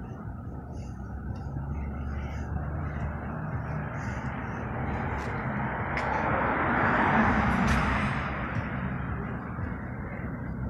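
A car passing along the street: its tyre and engine noise swells to a peak about seven seconds in, then fades away, over a steady low traffic hum.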